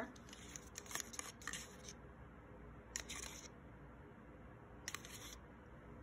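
Faint, short scrapes and clicks of a stir stick against a plastic cup of mixed acrylic pouring paint, a few at a time about two seconds apart, as the paint's consistency is shown.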